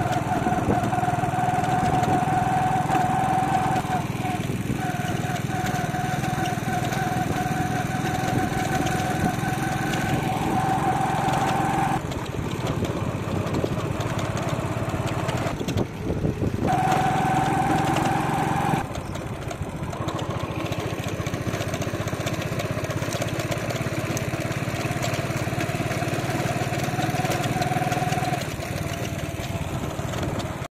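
A small engine running steadily while on the move, with a steady whine that breaks off briefly a few seconds in, drops out for several seconds in the middle, and stops shortly before the end.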